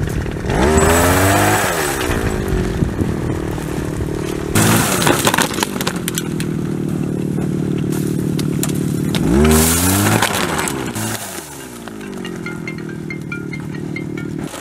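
Small petrol engine of a hand-held pole tree shaker running steadily, revving up and back down twice: about a second in and again near ten seconds. Each rev comes with a rattling rush from the shaken almond tree.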